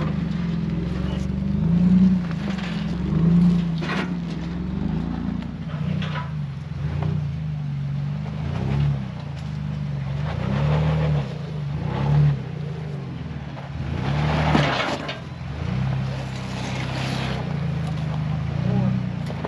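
Ford Bronco engine running at low revs, its pitch rising and falling slightly as it crawls over snow-covered rocks, with a few short sharp knocks along the way.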